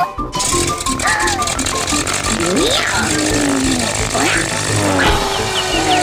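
Cartoon soundtrack: music under high, squeaky character voices that glide up and down, over a steady rattling noise that starts just after the beginning.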